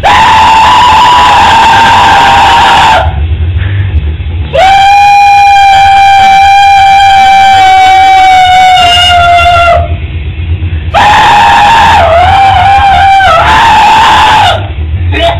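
Pig squeal metal screams into a handheld microphone: three long, high-pitched squeals, the middle one held steady for about five seconds and the last one wavering in pitch.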